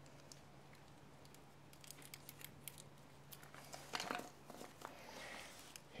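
Faint crinkling and small clicks of tape being handled while a screw is taped onto a screwdriver tip, over a faint low hum.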